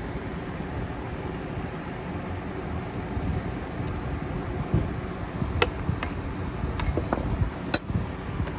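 Light clicks and clinks of a plastic lawn mower carburetor and its fuel line being handled over a small metal parts tray: a few sharp clicks from about the middle on, the loudest near the end, over a steady low background hum.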